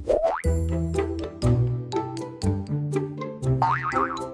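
Upbeat children's background music with a steady beat, with a quick rising cartoon sound effect just after the start and another near the end.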